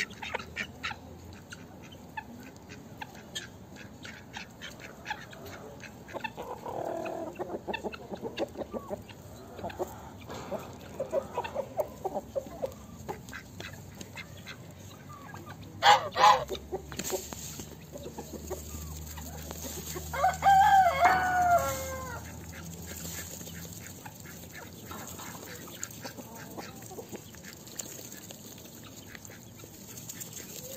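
A flock of hens clucking softly, with a rooster crowing once about two-thirds of the way through, the loudest sound. There is also a brief loud sound around the middle.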